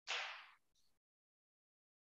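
A brief soft puff of noise that fades within about half a second, then dead digital silence as the video call's audio gate cuts the line.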